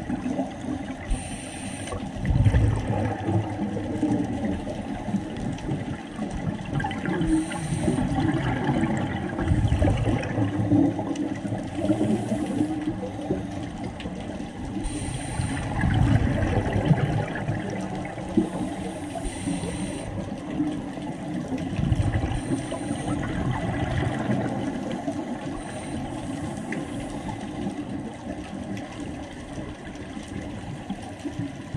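Scuba regulator breathing underwater: exhaled air bubbling out in rumbling gushes every few seconds, with short hisses between them.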